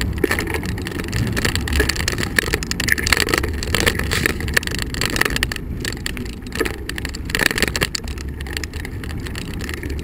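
Bicycle riding noise: steady tyre rumble on asphalt and wind on the microphone, with frequent small rattles and knocks as the bike rolls over the pavement.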